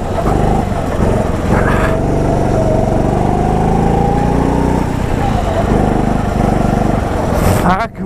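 Go-kart engine running hard, heard from the driver's seat. Its pitch climbs steadily for a few seconds as the kart accelerates, falls off about five seconds in as the throttle is lifted, then holds steady.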